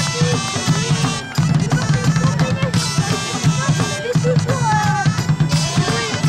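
Live band music: a driving drumbeat under a steady low drone, with a melody line above.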